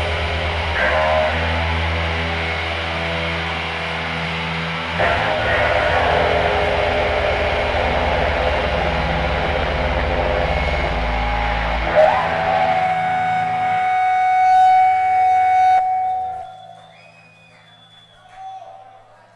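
Live rock band with electric guitars and bass holding long sustained chords and notes. A single guitar note is held and rings on near the end, then the music drops away about sixteen seconds in as the piece ends.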